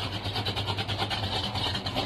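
Exhaust of a Plymouth Barracuda's 440 big-block V8 idling steadily, heard at the rear of the car.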